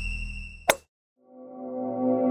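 Logo intro sound effects: a fading low rumble with a high steady tone, cut by one sharp pop about two-thirds of a second in, then a brief silence before a sustained synthesized chord swells in.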